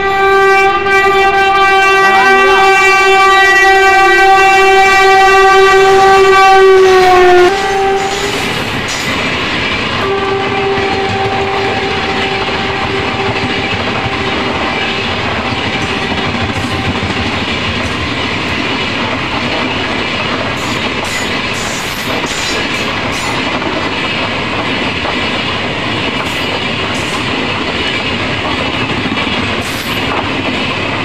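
Train horn sounding one long, loud blast of about seven and a half seconds, then a brief toot and a second, fainter long blast, as the Tejas Express coaches run past along the platform. Under and after the horn, the coaches' wheels give a steady rumble with clickety-clack over the rail joints.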